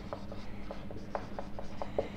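Felt-tip marker writing on a whiteboard: a quick, irregular run of short, faint scratching strokes as the equation is written out.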